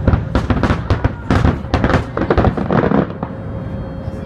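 Finale of an aerial fireworks display: a rapid volley of shell bursts, about five bangs a second, that stops about three seconds in.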